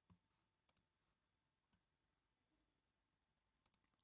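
Near silence, with a few very faint clicks.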